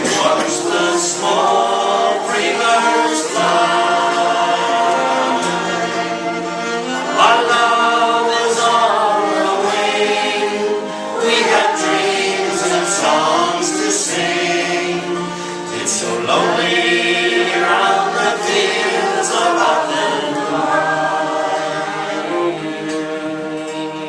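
Several voices singing an Irish folk ballad together, accompanied by a bowed fiddle and an acoustic guitar.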